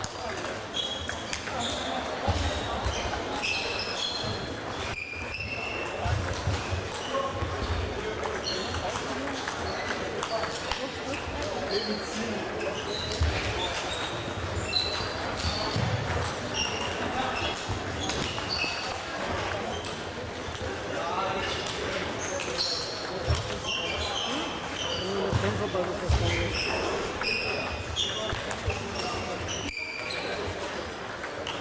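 Table tennis balls clicking off bats and the table in quick rallies, many short sharp ticks, with more ball bounces from neighbouring tables, echoing in a large sports hall.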